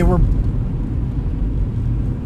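Steady low rumble of a moving car heard inside its cabin, the road and engine noise of driving.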